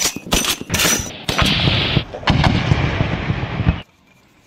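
Machine gun firing: a quick run of separate shots and short bursts, then a longer stretch of continuous fire that cuts off abruptly shortly before the end.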